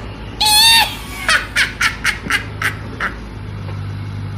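A loud squawk lasting about half a second, then a run of short squeaky chirps, about three or four a second, that stops about three seconds in, over a steady low hum.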